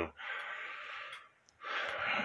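A man's audible breath between phrases: a breathy rush of about a second, a brief silence, then another breath as speech is about to resume near the end.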